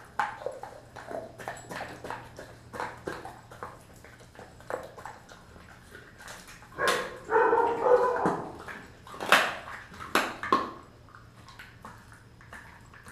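A Kelpie mix dog chewing raw beef tail, with wet smacking and bone crunching in short irregular bites. The loudest stretch of crunching comes a little past halfway, followed by two sharp cracks.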